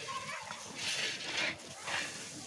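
Metal ladle stirring and scraping through korma masala sizzling in oil in a large iron kadhai, in a few hissing strokes. A brief faint call sounds near the start.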